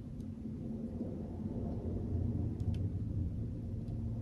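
A low, steady rumble with a couple of faint clicks.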